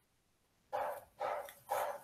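A dog barking three times, about half a second apart, quieter than the voice around it and thin-sounding as heard over a video call.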